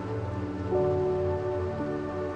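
Slow instrumental music of held, sustained chords that shift to new notes twice, over a steady rushing of stream water.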